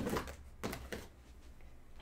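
Cardboard trading-card boxes being slid and set down on a tabletop: a few short scuffs and knocks in the first second.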